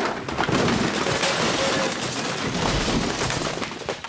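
A loud, sustained clatter and crashing, with many sharp knocks, as things are knocked over and smashed.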